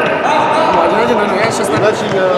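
Ball kicked and bouncing on the hard floor of an indoor futsal hall, with players' shouts, all echoing in the large room.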